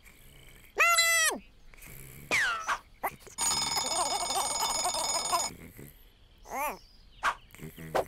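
A cartoon twin-bell alarm clock ringing for about two seconds in the middle. Before and after it come short squeaky, chirpy calls from a cartoon chick.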